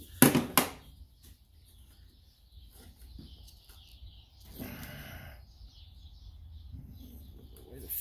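A small ratchet set down on a metal car bonnet: two sharp knocks about a third of a second apart. Quieter handling noises follow, with a short rubbing rustle about halfway through as the rubber cowl seal is worked by hand.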